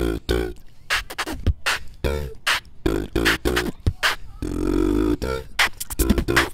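Live beatboxing into handheld microphones: rapid vocal drum hits, kicks and snares in a fast beat, with a held hummed note about four and a half seconds in.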